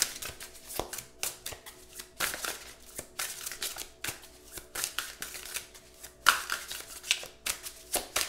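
A tarot deck being shuffled by hand: a continuous run of quick card flicks and slides, with one sharper snap about six seconds in.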